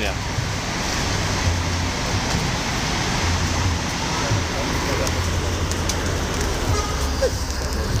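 Large diesel bus engine running close by: a steady low hum under a broad, even rush of noise.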